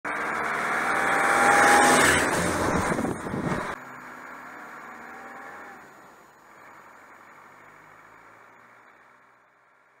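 An off-road vehicle drives past on a gravel road, its engine and tyres swelling to a peak about two seconds in. The sound cuts off abruptly near four seconds, leaving a fainter vehicle sound that dies away.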